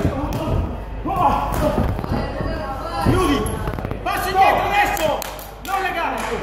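Repeated thuds of boxing gloves landing in a close-range exchange between two boxers, with people's voices calling out over them.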